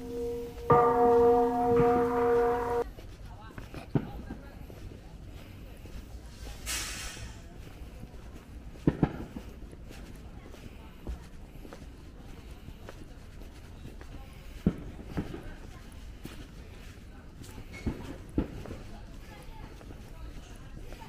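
A bell-like ringing tone, struck afresh about a second in, cuts off abruptly about three seconds in. Then comes a quiet outdoor background with a few scattered sharp knocks and a short hiss in the middle.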